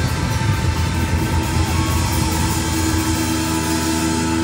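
Live rock band playing, with electric bass in the mix and a long held note coming in about three seconds in.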